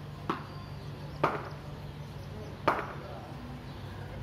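Three sharp knocks of cricket practice on a hard tiled floor between walls, with a short echo after each; the first is lighter and the second and third, about a second and a half apart, are the loudest.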